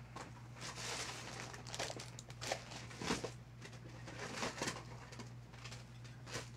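Faint rustling and scattered light clacks and knocks of items being handled and moved while someone rummages off-mic, over a low steady hum.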